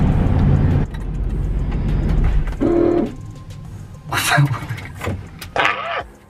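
Low road and engine rumble inside a moving truck's cab, cutting off suddenly about a second in. After that come a few short voice sounds over a quieter background.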